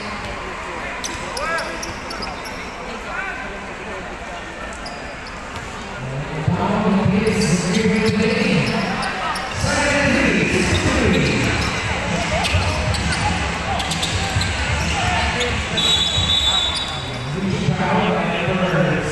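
Basketball dribbled on a hardwood court under the chatter and shouts of a crowd in a large arena. The crowd grows louder about six seconds in, and a short, high referee's whistle sounds near the end.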